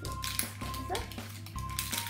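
Background music with held synth notes over a steady repeating bass, with a few faint clicks of handling mixed in.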